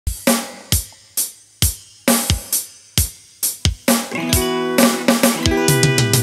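Dangdut band opening a song: single drum hits about two a second, then keyboard chords come in about four seconds in, with a quick drum fill near the end.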